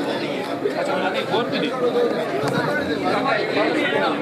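Chatter of many men talking at once, overlapping voices with no single clear speaker.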